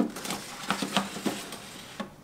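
An aluminium-foil tray crinkling and scraping as it is slid into a Philco air fryer oven, with a sharp click at the start and a run of light irregular clicks and knocks.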